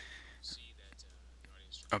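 Faint, whispery speech playing back from a computer: an Audacity preview of a voice recording with noise removal applied, thin and distorted by the effect.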